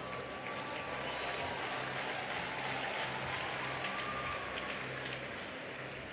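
Congregation applauding, a dense, even patter of many hands clapping, with a faint low steady hum beneath.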